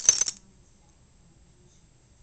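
Metal tags on a boxer's collar jingling in a quick burst of clinks as the dog jerks its head, over within the first half second.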